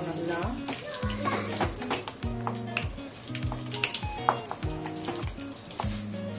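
Thick tomato-and-onion gravy sizzling in a steel pan while a flat spatula stirs and scrapes it, with many short clicks of the spatula against the pan, over a steady background music track.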